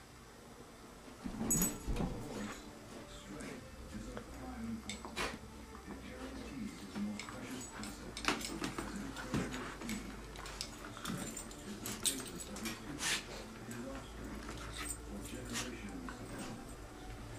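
Two puppies, a long-haired dachshund and a wheaten terrier, playing together: many short vocal noises throughout, with scattered knocks and scuffles.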